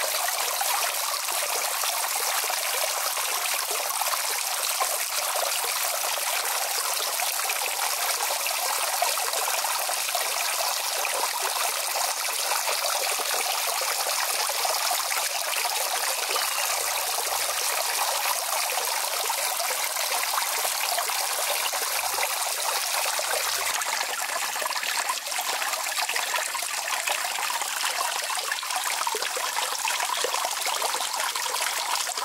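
Running water trickling steadily.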